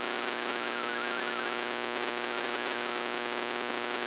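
MFSK32 digital text signal received on shortwave: a faint warble of stepping tones buried in loud static hiss, with a steady low hum underneath. The signal is fading into the noise, and the decoded text turns to garbage.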